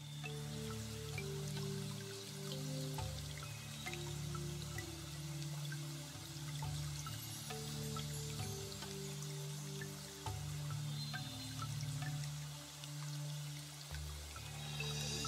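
Quiet background music of slow, held low notes that change every second or so, over a faint, even hiss with scattered tiny crackles.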